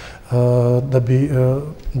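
A man's voice drawn out at a nearly level pitch for over a second, like a long hesitation while speaking, then ordinary speech resumes at the end.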